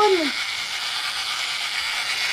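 Battery-operated toy fishing game running steadily: its small motor and plastic gears turn the two fish ponds with an even whirring.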